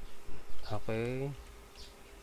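A man's drawn-out spoken 'okay' at a steady pitch over a low steady hum, with a few keystrokes on a computer keyboard as a command is typed.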